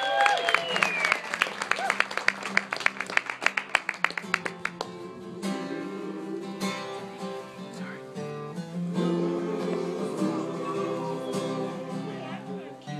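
Live acoustic guitar strumming with a group of men singing. The guitar strums quickly and evenly for the first five seconds or so, then gives way to held chords.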